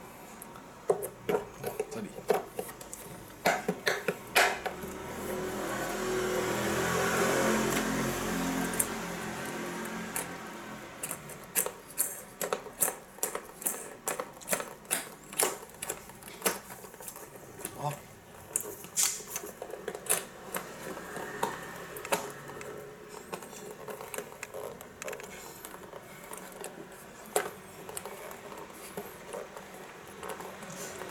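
Irregular clicks, taps and small clatters of pliers, a switch and plastic scooter parts being handled while wiring a switch in, with a broad swell of noise that rises and fades between about five and ten seconds in.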